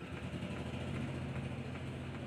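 A steady low motor hum, like an engine idling.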